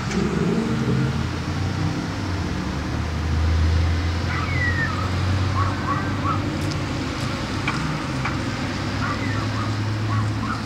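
A car's engine running with a steady low hum, swelling about three to four seconds in. Short bird chirps come and go over it in the second half.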